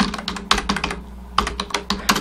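Typing on a computer keyboard: a quick, uneven run of key clicks as a word is typed.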